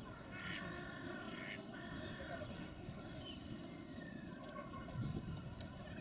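Faint steady mechanical hum, with faint distant voices rising briefly near the end.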